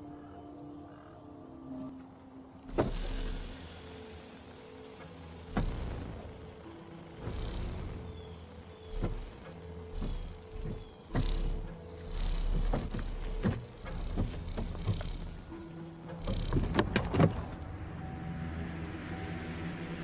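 Dramatic film score of sustained held tones, punctuated every few seconds by low booms and swelling whooshes.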